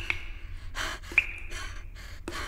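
A girl's gasping, tearful breaths, with two sharp high pings, one at the start and one just after a second in.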